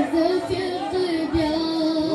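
A boy singing a devotional manqabat into a handheld microphone, a single voice in long held notes that bend and waver in pitch.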